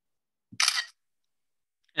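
macOS screenshot shutter sound: one short camera-shutter click about half a second in, as a selected area of the screen is captured.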